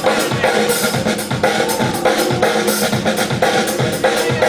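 Loud hip-hop break music with a steady, driving drum-kit beat of kick and snare, played for b-boys to dance to.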